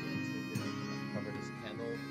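Celtic-style instrumental background music with plucked strings, playing steadily at a moderate level.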